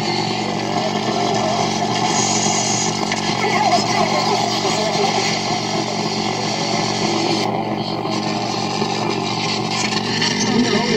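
Noise music from a chain of guitar effects pedals: a dense, distorted wall of noise over a steady low hum, its texture shifting as a pedal knob is turned. The high hiss briefly cuts out about seven and a half seconds in.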